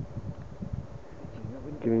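Uneven low rumble of wind on the microphone, then a man's voice speaking loudly for about half a second near the end.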